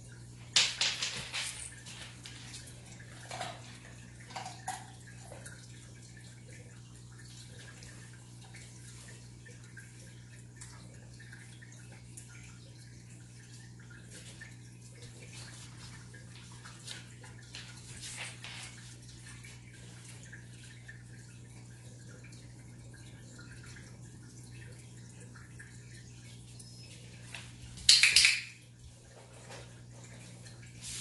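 A dog moving about and sniffing on a hardwood floor, with scattered short rustles and clicks and one louder burst near the end, over a steady low hum.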